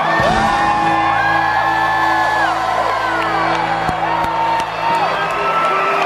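A live rock band with accordion holds a long sustained chord at the close of a song, while the crowd whoops and cheers over it. Two sharp drum hits come about four seconds in.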